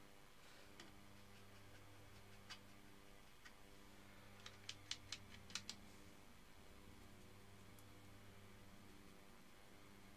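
Faint clicks and taps of a paintbrush against plastic watercolour half pans, with a quick cluster of ticks about halfway through, over a low steady hum.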